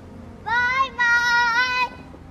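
A young girl singing two drawn-out notes in a high voice: a short one about half a second in, then a longer, wavering one that stops shortly before the end.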